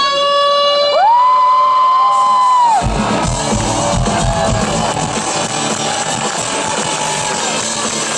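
Electric guitar solo played live through an amplifier: a long sustained note that bends up sharply about a second in and is held with vibrato until nearly three seconds, then cuts off. After that the sound turns into a dense wash of band and crowd noise with low drum hits under it.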